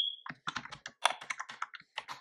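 Password typed on a computer keyboard: a quick, uneven run of key clicks, the first with a brief high ring.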